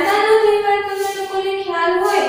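A woman's voice singing one unbroken phrase of long, held notes in a high register.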